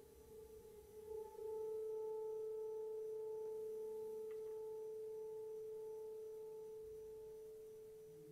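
A single held, almost pure ringing musical tone that swells about a second and a half in, then slowly fades, with faint higher overtones above it.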